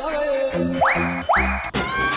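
Background music with a steady beat, overlaid with two short comic sound effects that swoop quickly up in pitch, about half a second apart, around a second in. Near the end a sharp hit, and the music switches to a different track.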